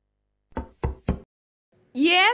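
Three quick knocks on a door, evenly spaced, in the first half of the clip. A rising vocal call begins right at the end.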